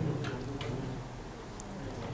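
A lull in the room: a steady low hum with a few faint, short clicks about a quarter and half a second in.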